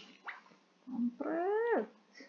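A cat meowing once, a single drawn-out call that rises and then falls, starting a little after a second in.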